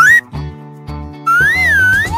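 Children's background music with a cartoon whistle sound effect. A rising whistle glide ends just after the start; then, a little past a second in, a whistle tone begins swooping up and down.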